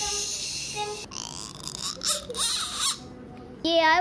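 A child making breathy, hissing mouth sound effects in play, with a short rising squeal about two seconds in; near the end the child's sing-song voice starts.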